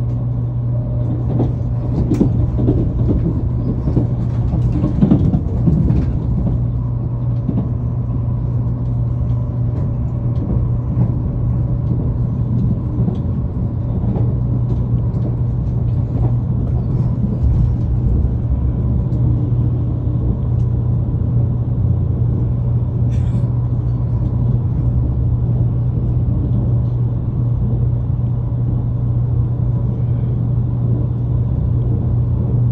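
Inside the passenger car of an electric limited express train running along the line: a steady low rumble of wheels on rail with a constant hum, and a few light knocks in the first several seconds.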